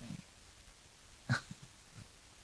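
A man's single short, breathy laugh just past halfway through an otherwise quiet pause.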